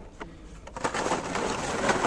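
Carded toy cars in plastic blister packs being handled and shuffled: a few light plastic clicks, then from about a second in a dense, growing rustle and crinkle of cardboard backing cards and blister plastic.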